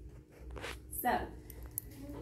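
Handheld sheets of paper rustling in a couple of short, crisp scrapes as they are handled.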